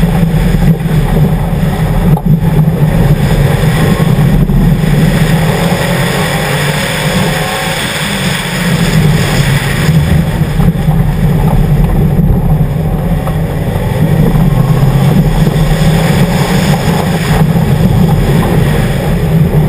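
2011 Subaru WRX's turbocharged flat-four engine running hard while driving fast over gravel, with road and wind noise over it. The sound is loud and steady, with two brief dips in the first five seconds.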